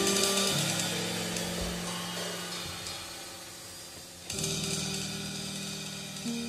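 Free-improvised jazz: drum-kit cymbals ringing and fading over held low piano and bass notes, followed by a new entry of cymbal wash and sustained notes about four seconds in.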